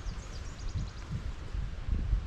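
Irregular low thumping and rumble from walking through grass with a handheld camera, with a short high trill of repeated bird notes in the first second.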